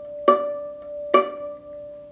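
Viola plucked pizzicato on the A string: the same third-finger D plucked twice, about a second apart, each note ringing on between plucks.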